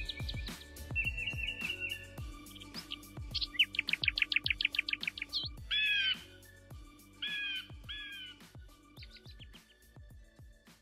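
Bird chirps and trills laid over background music with a steady beat: a fast run of rising chirps about four seconds in, then three separate slurred, downward calls.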